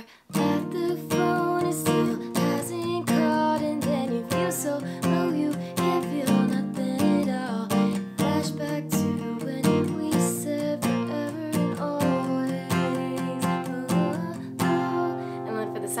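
Steel-string acoustic guitar, capoed at the third fret, down-strummed in even strokes through a chorus chord progression of Cadd9, G, D, Em7, then Cadd9, G, D.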